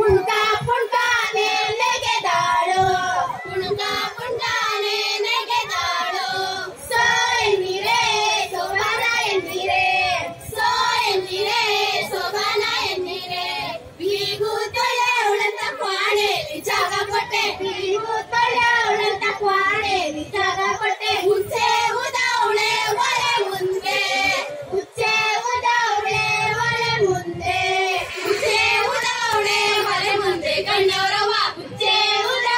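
A group of high-pitched female voices singing a Kannada folk song together into stage microphones, in continuous phrases with brief pauses between lines.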